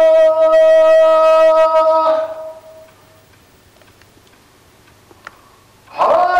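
A voice chanting one long, steady note that breaks off about two seconds in. A few seconds of quiet follow with a couple of faint clicks, and the next chanted note begins right at the end.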